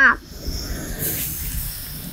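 Chopped tomatoes tipped into a hot oiled wok, sizzling, with the hiss growing stronger about a second in.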